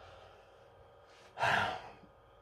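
A man's heavy sigh, one breathy exhale about a second and a half in, from the effort of holding a restless, heavy boa constrictor.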